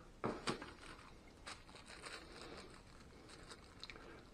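Faint rustling and crinkling of packaging as a small plastic bag of spare fuses is lifted from the box, with a few light clicks and taps, most of them in the first second.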